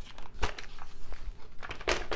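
Knocks and rattles of a large RC monster truck's plastic chassis and suspension as it is turned over by hand and set down on a workbench, with one sharp knock about half a second in and a louder one near the end.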